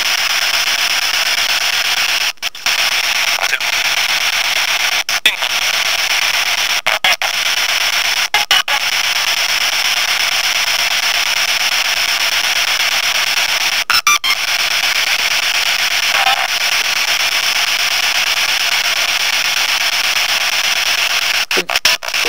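Steady radio-like static hiss with no low end, cut by brief dropouts several times, with faint, short voice-like fragments in the noise around the middle.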